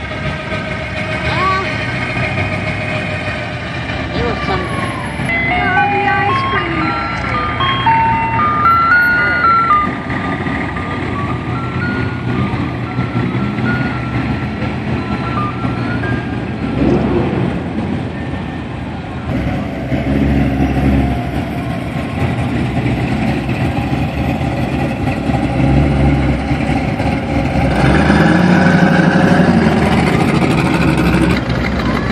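Classic cars' engines running as a procession of old cars cruises slowly past, with people talking. Roughly five to ten seconds in, a short tune of high stepped notes plays over the engines. The engine sound grows louder near the end.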